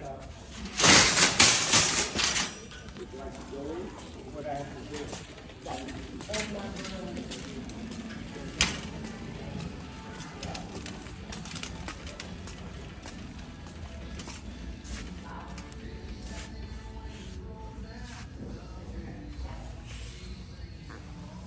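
A metal shopping cart rattles and clanks loudly for about a second and a half as it is pulled free from a row of nested carts. After that comes a quieter store background with faint music and voices, broken by one sharp knock about halfway through.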